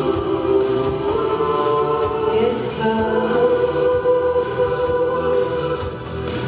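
An amateur choir of mostly women singing together in long, held chords that shift pitch every second or so.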